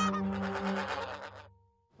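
Goose honk sound effect: one long, steady-pitched honk that fades out about a second and a half in.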